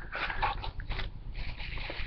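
Faint rustling and light taps from a cardboard product box being handled.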